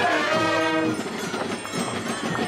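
Brass band with trumpets playing held notes in a chord that stops about a second in, leaving crowd noise with scattered clicks.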